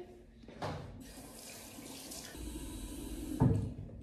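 A bathroom tap runs into a sink as water is splashed over the face to rinse off cleansing foam. The running water starts about a second in, and there is a louder low thump near the end.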